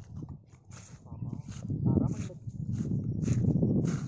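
People's voices calling out over a steady low rumble, which grows louder about one and a half seconds in.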